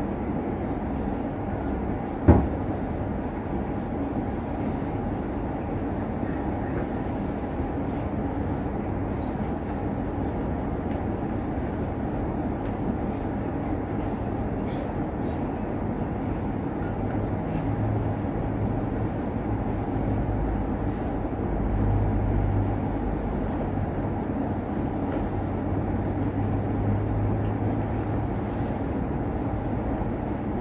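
Steady background rumble and hiss with no speech. There is one sharp knock about two seconds in, and a low hum comes and goes in the second half.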